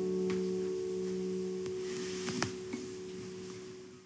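Last chord of an acoustic guitar ringing out and slowly dying away, with a few light clicks, the sharpest about two and a half seconds in.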